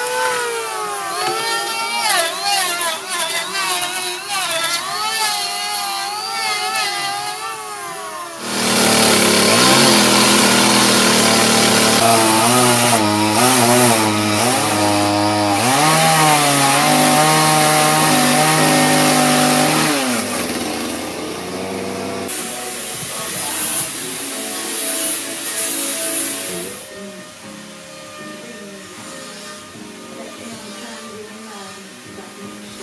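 An electric hand planer whines as it shaves a timber, its pitch wavering up and down with the cut. About eight seconds in, a much louder chainsaw-type tool takes over, cutting into the wood for some twelve seconds, then the tool noise drops away.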